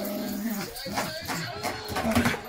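A dog making short pitched vocal sounds, one held for nearly a second at the start and shorter ones after it, while it worries a cheese-filled chew treat.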